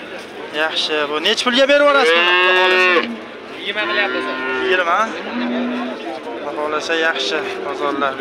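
Cattle mooing: one long, loud moo lasting about a second, starting about two seconds in.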